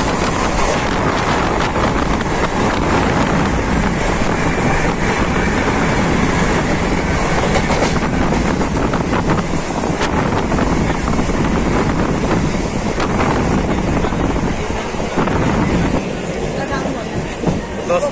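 Mumbai suburban local train running, heard from inside the carriage: a steady loud rumble and rush of wind with scattered clicks of the wheels over rail joints. It gets a little quieter near the end as the train slows into the station.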